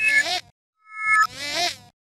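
Heavily effect-processed intro jingle, warped into a buzzy, wobbling sound. It comes in two short bursts, the first ending about half a second in and the second near the end, with a brief chord of steady tones just before the second.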